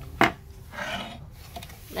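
Handling noise: a sharp knock, then a short dry scrape of something being rubbed or slid against a hard surface.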